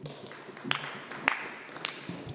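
Light, scattered applause from members in a debating chamber after a speech ends, with a few louder single claps standing out.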